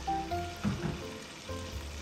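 Blended tomato-and-pepper stew base frying in oil in a pot, with a soft sizzle under background music.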